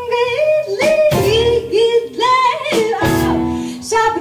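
Live jazz: a woman sings a gliding vocal line over grand piano, double bass and drum kit.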